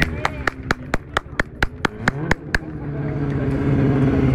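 Hand clapping close to the microphone, about a dozen claps at roughly four a second, stopping about two and a half seconds in. A motorcycle engine runs underneath and grows louder after the clapping ends.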